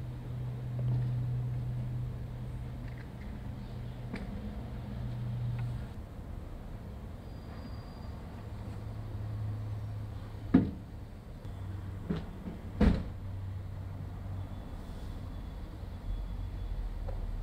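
Street sounds: a low steady hum that drops slightly in pitch about six seconds in, with three sharp knocks in the last third.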